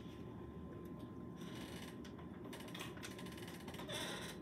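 Faint, scattered clicks of a handheld graphing calculator's keys being pressed, some in quick runs, over a steady low room hum with a thin faint tone.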